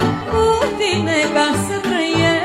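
Romanian folk song performed live: a woman singing over a band, with a steady pulsing bass beat and wavering, bending melody notes.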